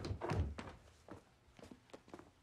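Several dull thuds in quick succession, loudest in the first half second, followed by fainter, sparser knocks.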